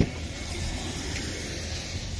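Steady outdoor background noise, a low rumble with an even hiss over it, and one short knock right at the start.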